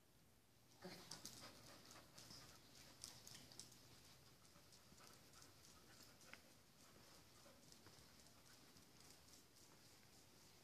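Faint, quick clicking of a dog's claws on a hard floor as it sets off trotting about a second in, the ticks going on steadily after that.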